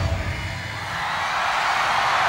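The end of a live rock band's song dying away, then a stadium crowd cheering and applauding, swelling from about a second in.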